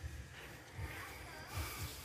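Faint, uneven low rumble of wind on the microphone, with a brief hiss near the end.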